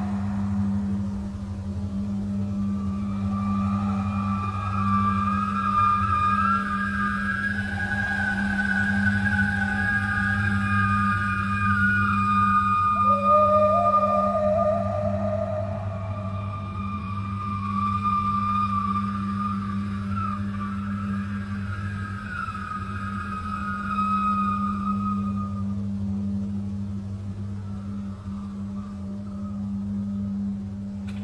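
Dark ambient horror score: a steady low drone under long, slowly wavering high tones that slide in pitch.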